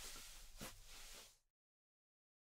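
Near silence: faint room tone and microphone hiss that cuts off to dead digital silence about three quarters of the way through.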